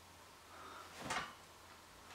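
Faint rustling of a comforter being gathered up by hand, with one short, louder swish about a second in.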